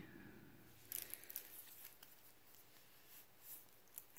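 Near silence with a few faint clicks and rustles about a second in and again near the end: a wristwatch being handled as its strap is put on and fastened around the wrist.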